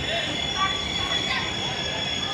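Passenger train coaches moving slowly along the platform with a steady high-pitched wheel squeal, amid voices on the platform.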